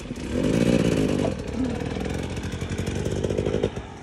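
An enduro motorcycle engine running close by. It comes in just after the start, is loudest in the first second, eases off, and drops away shortly before the end.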